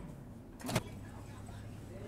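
A single sharp click about three quarters of a second in, typical of a Samsung microwave oven's door latch popping open once its cycle has ended, over a faint low hum.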